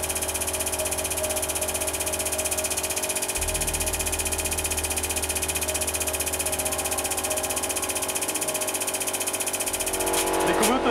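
Hydraulic press's pump motor running under load, a steady continuous hum whose deepest tone shifts about three seconds in.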